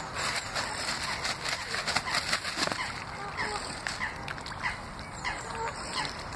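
Waterfowl calling in many short, repeated calls as they gather for thrown bread.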